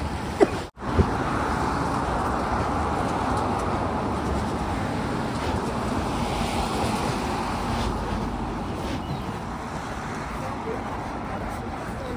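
Steady city street noise: traffic on a wet road. The sound cuts out abruptly for an instant about a second in.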